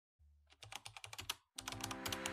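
Faint typing on a laptop keyboard: a quick run of key clicks, a brief pause about one and a half seconds in, then more clicks.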